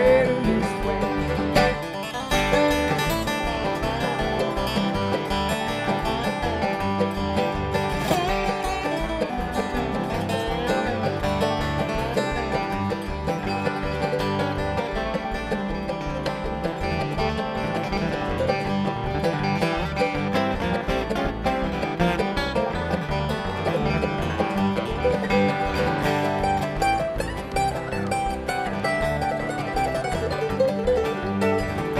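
Live bluegrass band playing an instrumental break with no singing: acoustic guitar, banjo, mandolin and upright bass, the bass plucking a steady pulse underneath.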